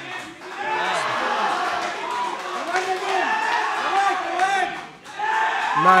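Ringside crowd shouting and cheering, several voices calling out over one another during a kickboxing exchange.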